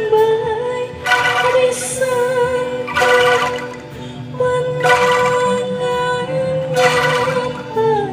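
A woman singing a long, held melody with a Sundanese angklung ensemble of bamboo instruments and band accompaniment. Fuller accented chords swell in about every two seconds.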